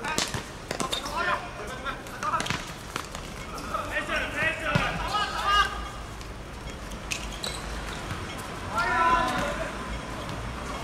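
Players shouting and calling to each other on a football pitch, with several sharp thuds of the ball being struck, mostly in the first second and again about seven seconds in.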